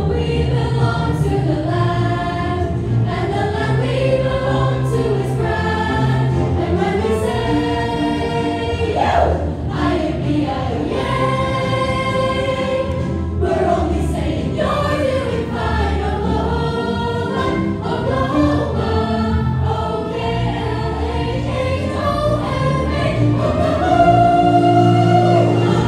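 A large chorus of students singing a show tune together, with instrumental accompaniment carrying a steady bass line.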